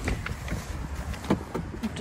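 A few light clicks and knocks over a low rumble of wind and phone handling as someone climbs out of a Jeep Wrangler's driver's door.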